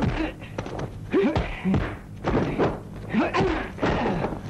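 Dubbed kung fu fight sound effects: a quick string of punch and kick thuds, with short grunts and shouts from the fighters between the blows.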